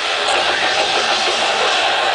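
Metal band playing live through an outdoor stage PA, heard from inside the crowd: a loud, dense wall of guitars and drums.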